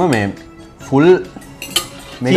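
Metal forks clinking and scraping against ceramic plates, with a few sharp clinks in the second half. A short voiced sound comes briefly at the start and again about a second in.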